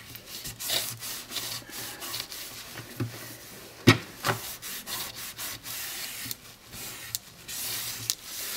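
A cloth rubbed over freshly glued paper on an album cover to smooth it down: a run of short swishing strokes, with a sharp knock about four seconds in.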